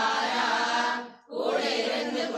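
A group of devotees chanting a devotional hymn together in sustained, sing-song unison. The sound cuts out for a moment just past halfway, then the chanting resumes.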